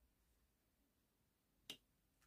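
A single sharp click as a tarot card is set down on the tabletop, near the end, against near silence.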